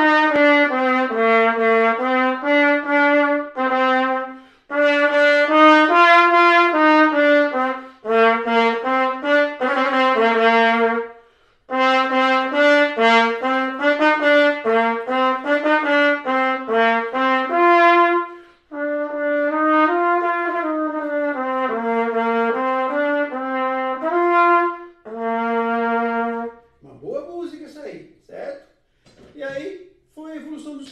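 Trumpet playing a melody of distinct held notes in phrases a few seconds long, with short breaks for breath between them. The playing stops near the end, and a man's voice follows.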